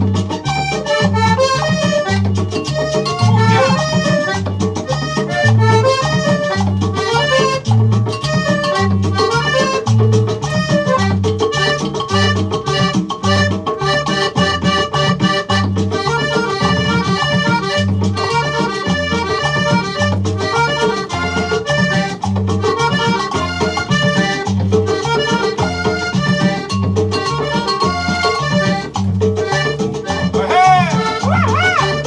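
A cumbia playing from a vinyl record: a steady, repeating two-note bass line under melodic instruments, with no singing.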